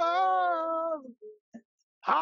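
One unaccompanied sung note held for about a second, its pitch sinking slightly at the end of the phrase, then a short gap.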